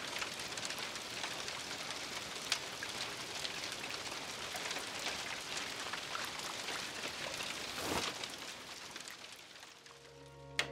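Steady hiss dense with fine crackles, like rain pattering, with a short swell about eight seconds in, then fading out near the end.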